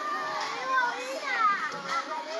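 A group of children's voices talking and calling out at once, several young voices overlapping.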